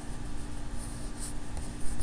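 Background noise of a desktop recording microphone: a steady low electrical hum and hiss with faint rubbing sounds, and a short low bump just before the end.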